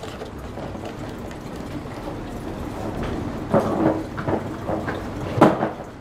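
Shoes being handled at a hallway shoe rack: a few short knocks and scuffs in the second half, the loudest about five and a half seconds in, over a steady low hiss.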